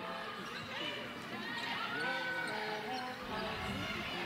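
Basketball arena sound during live play: a ball dribbled on the hardwood court amid a steady mix of crowd and player voices.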